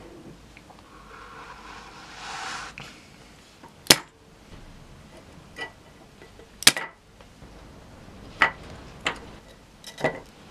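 Five sharp clicks and taps spread over several seconds, from needle-nose pliers and a soldering-iron tip working at a guitar effects pedal's circuit board as footswitch wires are desoldered and pulled. Before them comes a scraping slide lasting about two seconds.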